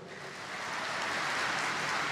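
Audience applauding, swelling up over the first second and then holding steady.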